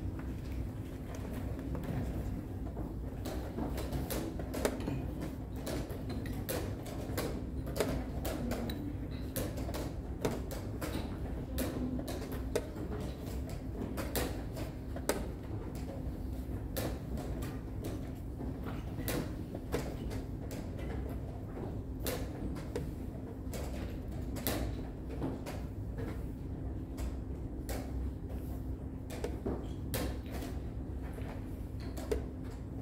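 Irregular sharp clicks and knocks of chess pieces being set down on a board and a digital chess clock being pressed in fast blitz play, over a steady low hum.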